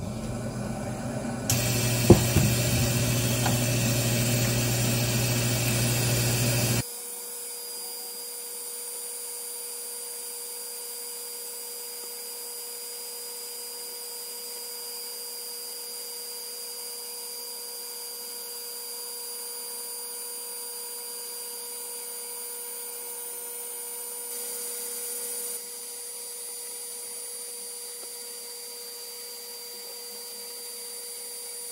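An xTool D1 Pro 40W diode laser cutter running a cut in plywood. For about the first seven seconds there is a louder rushing noise with a low hum and a sharp click about two seconds in. Then the hum stops abruptly and a quieter, steady machine whine with several steady tones carries on.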